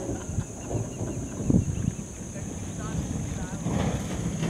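Wind buffeting the microphone with a rough, gusty low rumble, and a few faint bird chirps from the weaver colony a little past halfway.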